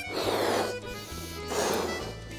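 Air blown by mouth into a latex balloon in two breaths, the second near the end, inflating it a little to stretch the rubber. Background music with held notes plays underneath.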